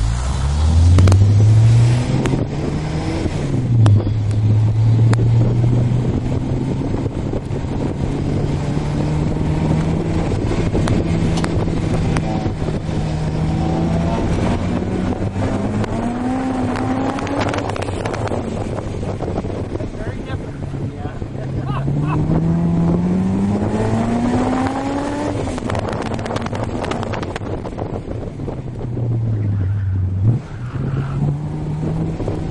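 Honda S2000's four-cylinder engine heard from the open-top cabin under hard acceleration on track. The revs climb and drop repeatedly with each pull and gearshift: a quick climb at the start with a drop about three and a half seconds in, then long climbs around the middle and again about three-quarters through.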